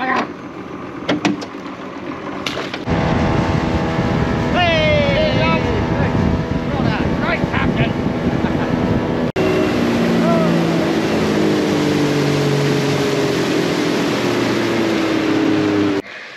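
Outboard motor running on a moving small boat, heard with wind and water noise and a few voices. After a cut the engine note falls slowly and steadily.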